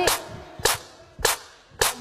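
A hip-hop drum beat with no voice over it: four sharp snare-like hits, about one every 0.6 seconds.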